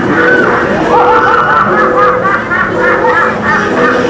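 Laughing-clown automaton playing its laugh, a long run of quick repeated 'ha-ha' bursts.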